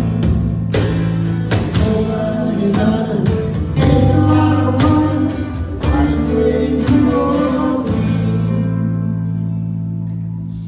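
Guitars, mostly acoustic, strumming the closing bars of a song, then landing on a final chord about eight seconds in that is left to ring and fade.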